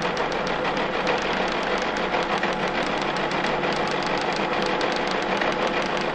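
Telex teleprinter printing an incoming message: a rapid, even clatter of the type striking the paper over a steady motor hum.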